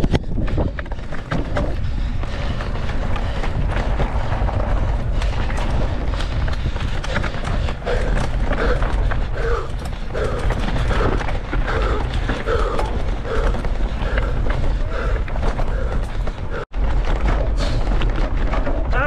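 Mountain bike ridden hard over a dirt race course, picked up by a camera on the rider: a heavy, steady wind rumble on the microphone, with rattles and knocks from the bike over rough ground. The sound drops out for an instant near the end.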